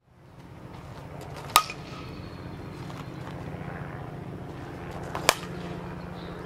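Softball bat striking the ball in batting practice: two sharp cracks, about four seconds apart, over a steady low background rumble.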